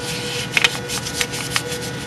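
A sheet of paper being handled and creased by hand while folding an origami frog: rustling with a few sharp crackles, over a faint steady hum.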